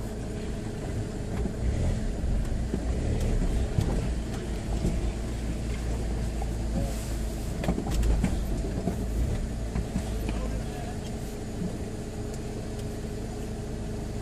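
Land Rover Freelander engine running steadily at low revs as the vehicle crawls over rough ground, heard from inside the cabin, with a low rumble and a few short knocks.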